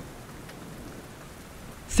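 Steady rain falling, a continuous rain-sound ambience track with no distinct drops or thunder standing out.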